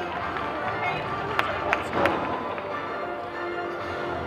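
Gymnastics hall ambience of background music and voices, with three sharp knocks about a second and a half to two seconds in, the last the loudest: a gymnast's hands and feet landing on a wooden balance beam during a flip.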